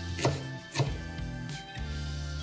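Background music, with two sharp knife chops on a bamboo cutting board as an onion is diced.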